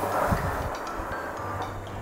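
Skateboard wheels rolling over a tiled floor: a rumbling rattle with a couple of low thumps near the start that fades away within about a second.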